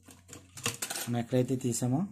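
A man talking, with light clicks and metallic clinks from wires and multimeter test leads being handled on an opened doorbell circuit; a faint steady low hum underneath.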